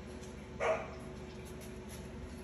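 Blue merle Australian Shepherd giving a single short bark about half a second in.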